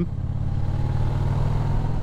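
Harley-Davidson Heritage Softail's V-twin engine running steadily at cruising speed, with road and wind noise.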